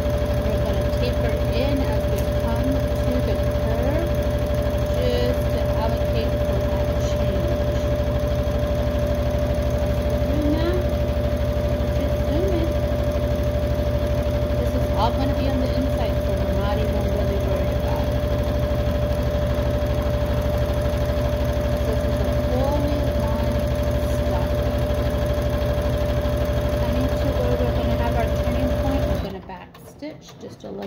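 Electric domestic sewing machine running continuously at steady speed, needle stitching through fabric, with a steady motor whine. It stops suddenly about a second before the end.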